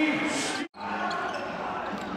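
Basketball arena ambience from the court and crowd after a made basket, which cuts off abruptly about two-thirds of a second in and gives way to quieter court and crowd noise.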